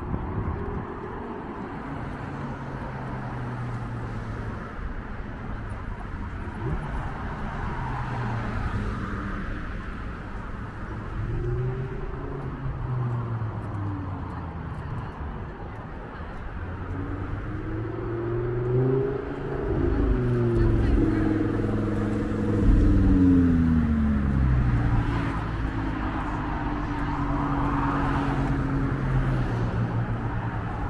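Road traffic passing in the lanes alongside: car engines with a steady hum, their pitch rising and falling as vehicles speed up and go by, loudest about two-thirds of the way in.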